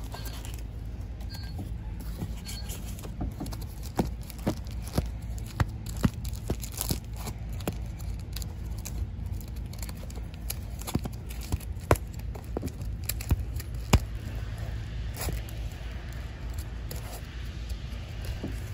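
Bagged and boarded comic books being flipped through in a cardboard box: plastic sleeves crinkling and scraping, with a run of sharp clicks as the books slap against each other, over a steady low hum.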